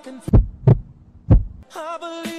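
Three deep, short thumps over a low hum, in a break in the background song; an edited-in sound effect rather than a sound from the scene.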